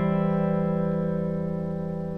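A single chord on a Les Paul Custom electric guitar, struck just before and left to ring, fading slowly away.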